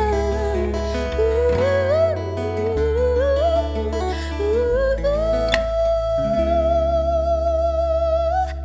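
A woman singing a song with a small live band of acoustic guitar and electric bass guitar. Her voice climbs and then holds one long note with vibrato from about five seconds in, over steady bass notes.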